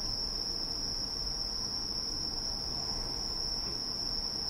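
Crickets singing a steady high-pitched note without a break, over faint room noise.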